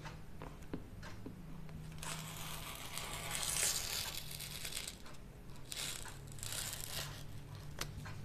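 Rotary cutter rolling through layers of rayon fabric on a cutting mat, a crunchy, crinkly cutting sound in two strokes: a longer one from about two seconds in and a shorter one just after the middle.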